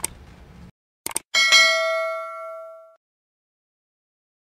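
Subscribe-button sound effect: a quick double mouse click about a second in, then a bright bell ding that rings and fades out over about a second and a half.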